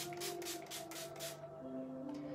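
A pump-spray bottle of facial toner mist spritzed at the face: a quick run of short hissing sprays that stops about a second and a half in. Soft background music with held tones plays underneath.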